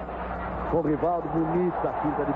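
A man's voice speaking softly over a steady low hum: speech only.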